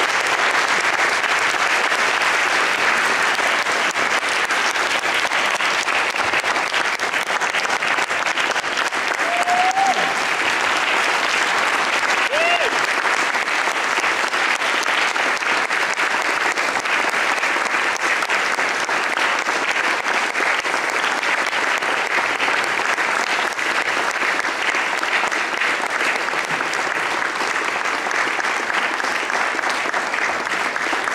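Audience applauding, a long steady round of clapping, with two brief rising cheers about ten and twelve seconds in.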